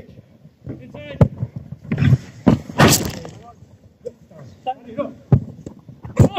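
Footballers' voices calling out across the pitch, with a few sharp knocks of a football being kicked and a loud burst of noise about three seconds in.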